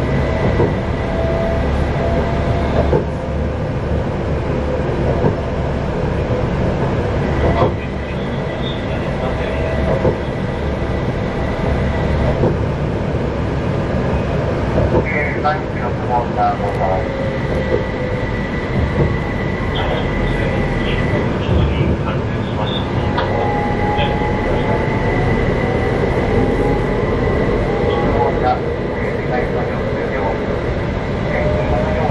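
Utsunomiya Light Rail HU300 tram running, heard from inside: a steady rumble of wheels on rail with a high whine and lower tones that slide up and down in pitch as the speed changes, and a few short knocks.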